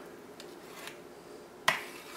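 A metal offset spatula clicks once, sharply, against the rim of a steel cake ring while buttercream is being smoothed flat. The click comes near the end; before it there is only faint room sound.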